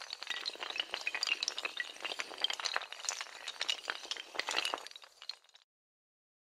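Sound effect for a logo animation: a rapid run of many small glassy clinks and clatters, like rows of tiles or dominoes toppling and chinking together. It cuts off suddenly near the end.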